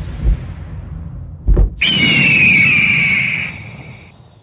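Channel-logo sting built from sound effects: a few low booms and a quick whoosh, then a long, high, slightly falling cry like an eagle's screech that fades out near the end.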